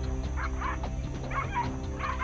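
A dog giving a few short barks and yips while it snaps at a monkey, over steady background music.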